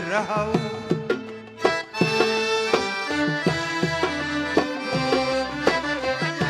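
Live Sudanese band music: a darbuka goblet drum keeps a steady beat under held melody notes from the accompanying instruments. The singer's voice is heard briefly at the start, then the passage carries on instrumental.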